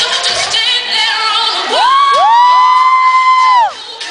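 Pop dance music playing loud, then the beat drops out and several voices let out a long whoop that rises, holds and falls away, the voices starting one after another.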